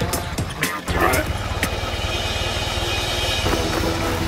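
Cartoon vehicle engine sound effect: a low rumble that starts suddenly about a second in and then runs steadily, over background music.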